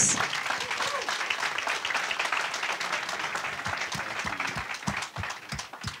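Audience applause, dying away gradually.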